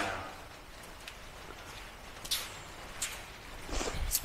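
Quiet room noise with a few faint, short taps about two, three and nearly four seconds in: footsteps on a concrete floor.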